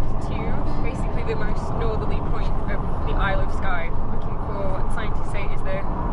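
Steady low rumble of a car driving on the road, heard inside the cabin, under continuous talking.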